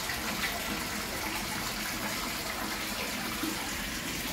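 Steady splashing of a stream of water pouring from a spout into a small garden fish pond.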